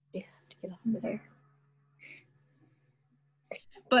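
Soft, murmured speech over a video call, then a pause with a faint steady hum and a brief hiss; talking starts again near the end.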